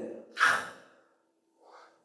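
A man's short audible breath about half a second in, a brief pause between spoken sentences.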